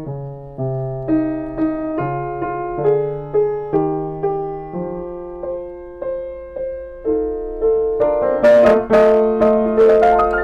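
A new Feurich 122 upright piano played slowly in the middle and tenor range, about two notes or chords a second, each left to ring. The playing grows louder and brighter in the last couple of seconds.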